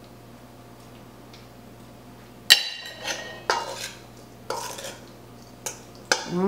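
Metal spoon knocking and scraping against a stainless steel mixing bowl while stirring a pasta salad. A loud ringing clank comes about halfway through, followed by several lighter clinks and scrapes.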